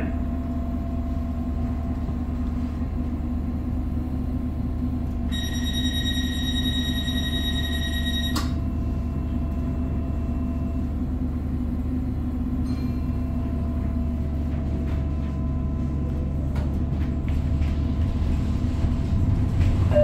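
Tyne and Wear Metro Class 994 Metrocar running between stations, heard from inside the passenger saloon: a steady low rumble from the wheels, motors and track. Partway through, a steady high tone sounds for about three seconds and ends with a click.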